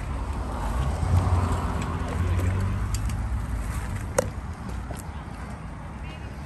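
Wind buffeting the microphone and tyres rolling on pavement while riding a bicycle, a low rumble that is heaviest in the first few seconds, with one sharp click about four seconds in.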